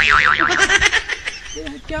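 A comedy 'boing' sound effect: a loud tone wobbling rapidly up and down in pitch, dying away after about half a second. A man's voice follows near the end.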